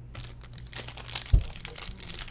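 Crinkling and crackling of a trading-card pack wrapper being handled: a dense run of small crisp clicks. About a second and a third in there is a single dull thump.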